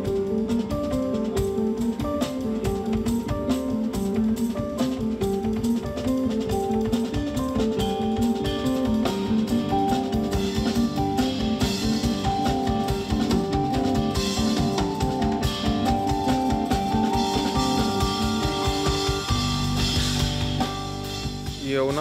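Jazz-fusion trio playing live: a busy, steady drum-kit beat under electric bass and keyboard lines. Near the end the beat drops out, leaving a held low chord and a wash of cymbal.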